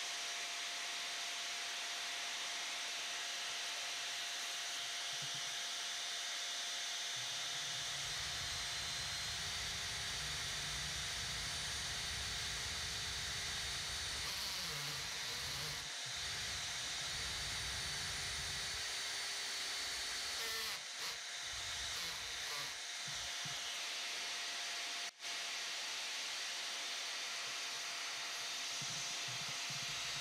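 Vacuum dust extraction running steadily through the pocket-hole jig's hose attachment, a continuous hiss with a steady hum. In the middle of the stretch a cordless drill with a stepped pocket-hole bit bores into the pine board through the jig's guide, adding a low rumble and a motor whine that shifts in pitch.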